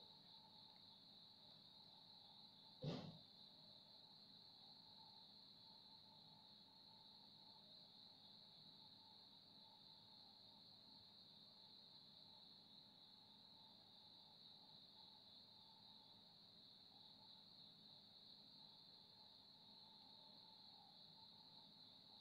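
Near silence: room tone with a faint steady high-pitched drone, and one short soft knock about three seconds in.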